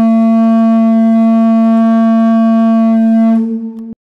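A conch-shell trumpet blown in one long, steady, low note. It wavers and weakens near the end and stops suddenly just before he lowers the shell.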